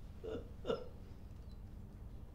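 A person's voice making two short vocal sounds that fall in pitch, about a third of a second apart in the first second, faint.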